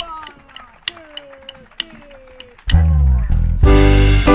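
Drumsticks clicked together three times, about a second apart, counting in a slow blues, with a man's voice between the clicks. The full band comes in loud on the next beat, near the end, with bass and electric guitar.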